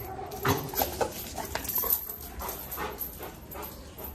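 A Rottweiler giving a few short whimpers and yelps, the first and loudest about half a second in.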